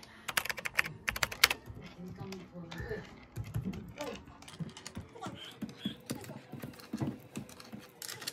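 Typing on a computer keyboard: a quick flurry of sharp key clicks in the first second and a half, then irregular keystrokes.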